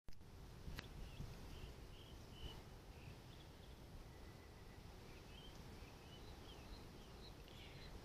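Faint outdoor ambience: scattered small bird chirps over a low, steady rumble on the microphone, with a single click about a second in.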